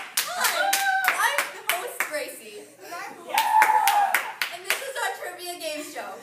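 A small group clapping, with voices calling out and cheering over the claps; the clapping is dense for the first two seconds, then thins to scattered claps.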